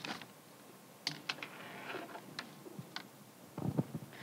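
Scattered light clicks and taps of handling noise, about seven spread unevenly over a few seconds, with no voice.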